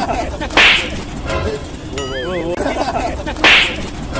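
Two sharp whip-crack sound effects about three seconds apart, the loudest things heard, with a short warbling comedic tone between them.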